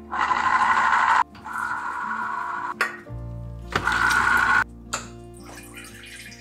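SMEG electric citrus juicer running in three bursts, each starting and stopping abruptly, as a lemon half is pressed onto its spinning reamer: a whirring, grinding rasp of fruit against the reamer, with a short click between bursts.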